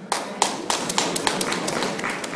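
Hands rapping on desktops in an irregular run of sharp knocks, a few each second, thinning toward the end: debate-style desk-knocking applause.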